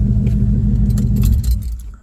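1982 Ford F-150's 302 V8 idling, a steady low rumble heard inside the cab, which dies away near the end.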